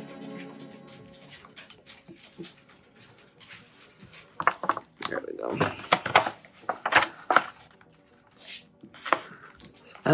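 Puppies yipping and whining in a few short calls, from about four to seven and a half seconds in, over faint background music and the light rustle of vinyl sheet being handled.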